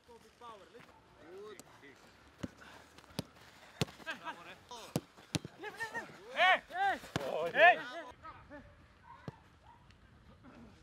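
Footballs being kicked on a grass pitch, sharp single thuds scattered through, with players' loud shouts a little past the middle, which are the loudest sound.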